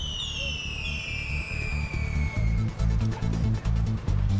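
A descending whistle sliding steadily down in pitch over about two and a half seconds, over background music with a low pulsing beat that grows stronger partway through.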